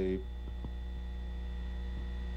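Steady low mains hum on an old archival recording's soundtrack, heard plainly in a pause between a man's words.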